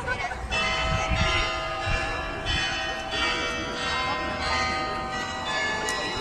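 Church bells ringing, new strikes coming in about every second and overlapping as each rings on.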